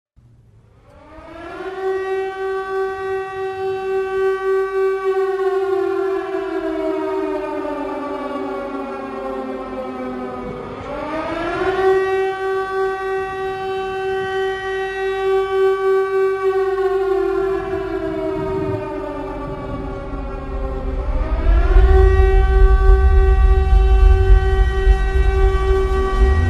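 Air-raid siren winding up to a steady wail and winding back down, three rises and two falls over the stretch. A low rumble builds in near the end under the held tone.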